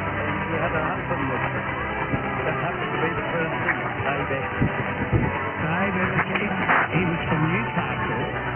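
Jumbled mix of several distant AM broadcast stations sharing 666 kHz, heard through a communications receiver in lower-sideband mode: music and voices overlapping, with no one station dominating. The audio is narrow and muffled, with nothing above about 3.5 kHz.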